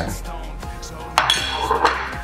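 Background music with a few sharp clinks of a metal fork against a ceramic plate as rice is scraped from one plate onto another, the loudest clinks about a second in and near the end.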